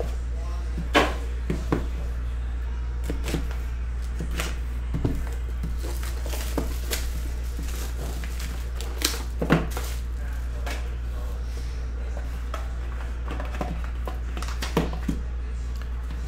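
Hands handling cardboard trading-card boxes: scattered knocks and taps as boxes are set on the table and opened, and crinkling of cellophane shrink-wrap being peeled off a box, over a steady low hum.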